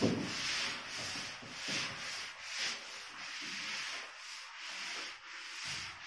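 Whiteboard being erased by hand, a steady run of rubbing back-and-forth strokes across the board's surface.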